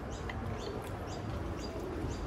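Small birds chirping in short, high, repeated calls, over a low steady background rumble.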